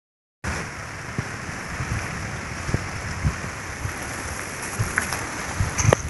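A steady rushing hiss of outdoor noise, with a few soft knocks and a sharper click just before the end.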